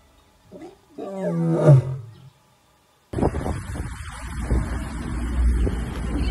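Lioness roaring: a short grunt, then one deep call about a second long that falls in pitch. After a brief silence a steady low rumble starts suddenly.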